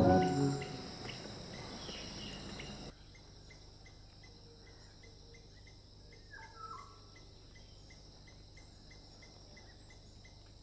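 Music dying away in the first second, then faint night ambience of a cricket chirping in a steady, evenly repeating rhythm, with a brief falling call about six and a half seconds in.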